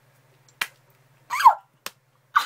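Two sharp cracks of hard-boiled egg shells being broken, a little over a second apart. Between them comes a short, loud yelp that falls in pitch.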